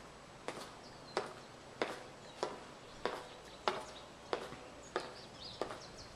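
Footsteps on a concrete patio: about nine sharp steps at an even walking pace, with a few faint bird chirps.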